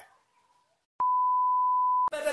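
A steady, single-pitch electronic beep lasting about a second, starting abruptly after a moment of silence: a censor bleep.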